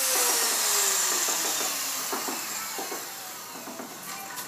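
A motor spinning down: a loud whirring noise that starts suddenly and fades over the few seconds as its pitch falls.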